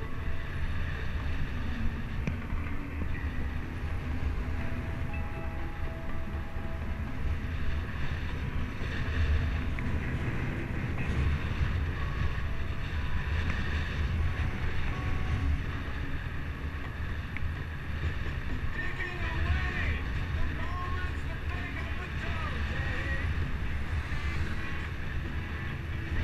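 Steady wind noise buffeting the microphone of a camera on a moving bicycle, a low rumble that swells and eases with the airflow.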